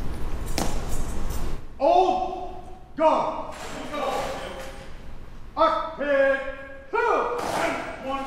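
Military drill commands shouted in a run of long, drawn-out calls, one after another, echoing in a large hall. A single sharp knock comes about half a second in.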